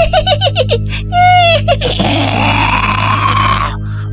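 A langsuir's ghostly shrieking laugh ('mengilai'): a shrill, high-pitched cackle of quick 'ha' bursts and a held shriek, then a long breathy, rising wail. A low, steady drone runs underneath.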